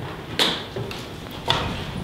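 Two sharp knocks about a second apart over low room noise.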